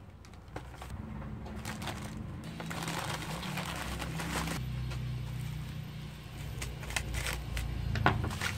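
Plastic courier mailer pouch rustling and crinkling as it is handled, torn open and a bubble-wrapped package is pulled out, with soft instrumental music underneath.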